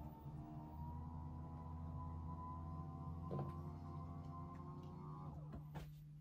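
Flexispot electric standing desk's motors raising the desk: a faint, steady whirring hum that ramps up in pitch as it starts, holds for about five seconds, and winds down just before the end. A small knock comes about halfway through.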